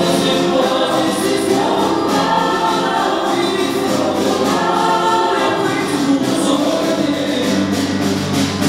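A young male lead singer sings into a handheld microphone, backed by a mixed choir holding long, sustained harmonies. There is little deep bass under the voices.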